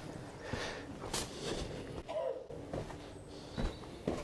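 Soft footsteps of a man walking on a dirt path and down stone steps: a few faint, uneven scuffs, with one brief short sound about two seconds in.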